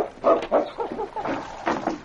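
Sled dog making a quick run of short barks, a radio-drama sound effect on an old broadcast recording.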